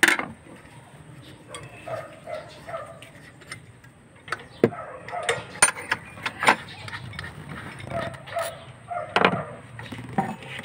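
Scattered sharp metallic clicks and clinks of hand tools and loose metal parts on the engine top as the servo and its bracket are worked loose: one click at the start, then a run of louder ones through the second half.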